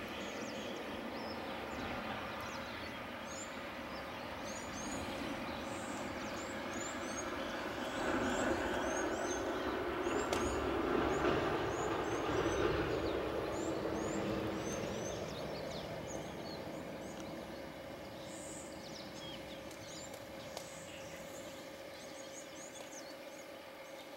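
Outdoor ambience of many short, high bird chirps repeating over a steady background noise that grows louder for several seconds near the middle and then fades.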